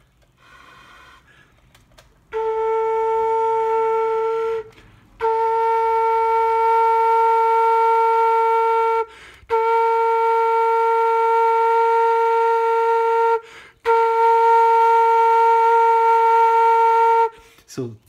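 Homemade PVC flute sounding four long held notes of the same pitch, each two to four seconds long, with short breath gaps between them. The note sits flat of the target B flat, between A and B flat, because the finger hole being tuned is not yet wide enough.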